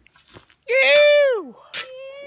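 A boy's loud wordless yell, held on one high pitch for about half a second and then sliding down in pitch as it fades out.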